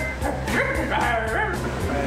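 A woman's voice making a few high yelps that glide up and down in pitch, over background music with a steady beat.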